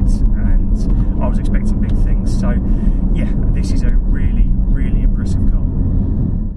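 Steady cabin drone of a Porsche 718 Cayman GT4 on the move: its mid-mounted, naturally aspirated 4.0-litre flat-six running just behind the seats, mixed with road and tyre noise. A man's voice talks over it at times.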